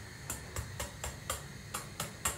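A raw egg tapped lightly and repeatedly against the rim of a stainless steel saucepan, about four small clicks a second, the shell not yet cracking.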